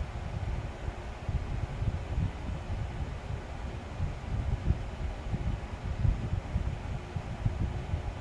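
Low, uneven background rumble with a faint hiss, with no distinct event standing out.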